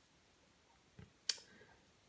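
Two faint clicks of knitting needles touching as a stitch is worked, the second, a little over a second in, sharper than the first.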